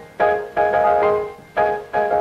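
Grand piano played fast in a double-time rhythm arrangement: several loud chords struck in quick succession, each ringing and fading before the next.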